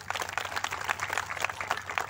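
Crowd applauding: many hands clapping together in a dense, continuous patter.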